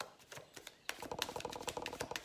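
Deck of tarot cards being shuffled in the hands: a few soft card clicks, then a quick run of small clicks from about a second in as the cards are slid and tapped together.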